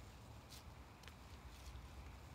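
Near silence: faint outdoor ambience with a steady low rumble and a few soft ticks.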